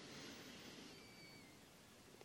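Near silence: room tone, with a faint soft rush in the first second and a faint, brief high thin whistle about a second in.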